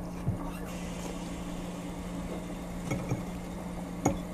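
A person eating spaghetti close to the microphone: strands slurped in and chewed, with a few soft clicks near the end, over a steady low hum.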